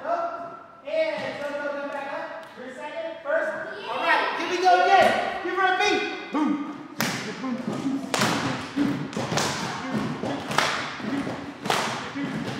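Wordless voices vocalising a beat, then a series of irregular sharp thuds and claps from about seven seconds in, with the voices going on over them.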